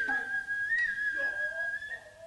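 A Noh flute (nohkan) holding a high, piercing note that bends up slightly about halfway and stops at the end, with fainter lower wavering sounds beneath.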